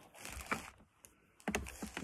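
A few light clicks and taps with soft handling noise. There is a quiet gap about a second in, and the clicks and handling pick up again after that.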